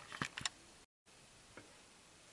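Two soft clicks close together near the start, then a momentary dropout to dead silence about a second in, followed by faint room tone.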